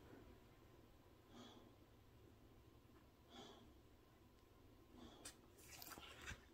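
Near silence: room tone with two faint breaths about two seconds apart, and a few soft clicks near the end.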